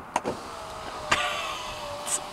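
Sprinter van's driver-side power window winding up: a steady electric motor whine that starts about half a second in, with a sharp click a little after one second.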